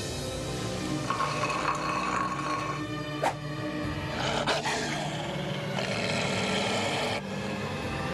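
Tense background music with a beast's growling over it, the werefox sound effect. Sharp hits fall in the middle.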